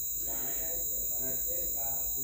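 Steady high-pitched insect-like trill that does not change, with a fainter steady tone below it, and a faint murmuring voice underneath.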